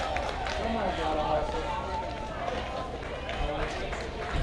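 Many overlapping, indistinct voices of softball players and spectators calling out and talking.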